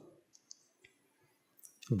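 A quiet pause with a few faint, short clicks, then a man's voice starts again at the very end.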